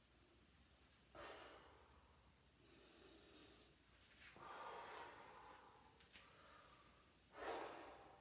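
A woman breathing hard during a dumbbell workout: four separate breaths, faint overall, the loudest near the end.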